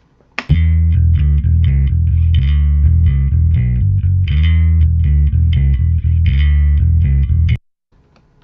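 Electric bass line played through an Ampeg SVT amp-simulator plugin, a run of repeated, evenly rhythmic notes with a deep, driven tone. It starts about half a second in and cuts off abruptly near the end.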